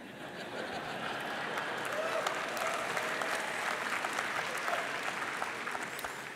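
Audience applauding, swelling over the first couple of seconds, then holding steady and starting to taper off near the end.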